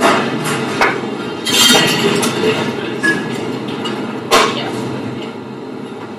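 Metal bar tools and glassware being handled on a bar top: a few sharp clinks and knocks, one longer rattle about a second and a half in, and a loud clink a little past four seconds. A steady low rumble of room noise runs underneath.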